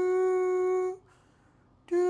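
A man humming a lullaby: one long, steady note that stops about a second in, a short pause, then a new note beginning near the end.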